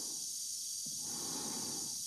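Steady hiss of a spacesuit's air supply, with an astronaut breathing inside the helmet.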